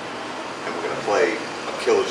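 A man's voice speaking a few words in short bursts, over a steady low room hum.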